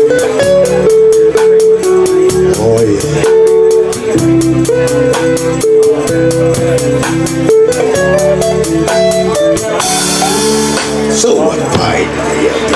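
Live blues band playing an instrumental passage: electric guitar carrying a lead line of held, bending notes over a steady beat on the drum kit, with a cymbal crash about ten seconds in.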